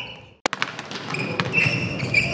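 Volleyball practice on an indoor court. After a brief drop-out there is a sharp ball strike about half a second in, then a few lighter knocks of ball on hand or floor, and short high sneaker squeaks on the court surface.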